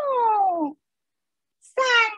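A woman's high falsetto voice reciting Peking opera rhythmic speech (yunbai) in the dan female-role style. One long syllable slides down in pitch, then a pause of about a second, and the next drawn-out syllable begins near the end.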